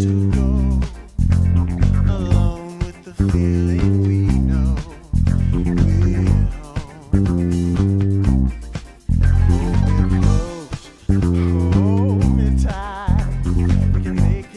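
Electric bass guitar playing a syncopated funk bass line of short, quickly changing low notes, along with a funk band recording whose higher parts waver above it.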